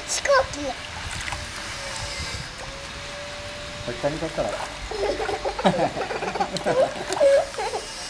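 Pond water splashing and sloshing as a small child, held on her belly, kicks and paddles, over a faint steady tone. Voices come in about halfway through, mixed with the splashing.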